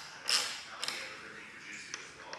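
Motorcycle flyscreen and its mounting hardware creaking and clicking as they are handled and screwed into place. There is a short scraping creak about a third of a second in and sharp clicks near one second and near the end.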